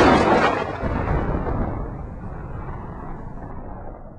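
A sudden loud boom that rumbles on and slowly fades away over about four seconds.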